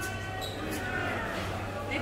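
Indistinct background voices over a steady low hum, with two sharp taps about three-quarters of a second apart.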